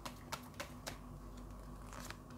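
Tarot cards being handled and laid down: a string of faint, irregular clicks and snaps of card stock.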